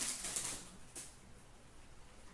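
Foil wrapper of a hockey card pack crinkling as it is torn open, dying away about half a second in, followed by a single faint tick about a second in.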